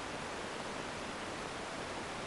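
Steady, even background hiss with no other distinct sound.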